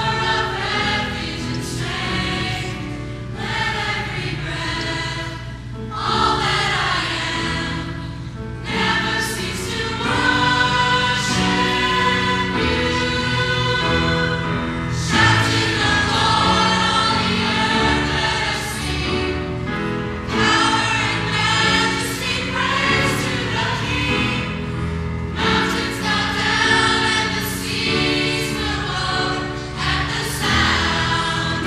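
Youth choir of mixed young voices singing a Christian song together, in phrases with short breaths between them.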